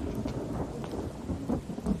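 Steady rain falling, with low rumbles of thunder that swell near the end.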